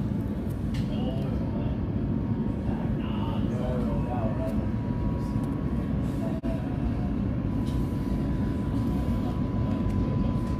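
An Oslo Metro train in motion, heard from inside the carriage: the steady rumble of wheels and running gear on the rails, with a thin steady whine joining about four seconds in.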